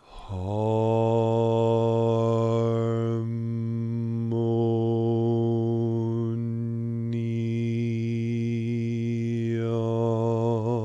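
A man intoning the word "harmonia" as one long note on a single low pitch, held steady for the whole breath. The vowel sound shifts a few times as he moves through the syllables.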